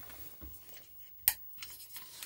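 A sharp click a little over a second in, followed by a cluster of fainter scratchy crackles near the end, over a low steady hum.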